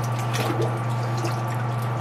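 Water dripping and trickling around a hang-on-back aquarium filter as it is worked loose from the tank, with small handling clicks, over a steady low hum.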